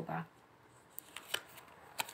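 A tarot card being drawn off the deck by hand: a few light card clicks and flicks, mostly in the second half.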